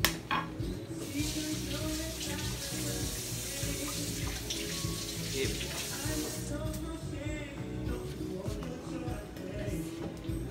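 A sharp knock right at the start, then a kitchen tap running for about five seconds, starting about a second in and shutting off.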